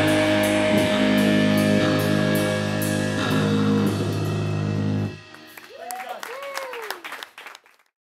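Hardcore punk band's amplified electric guitars holding a final chord that rings out steadily, with faint regular cymbal ticks, cut off suddenly about five seconds in. After it, much quieter sound with a few short rising-and-falling shouts and scattered clicks.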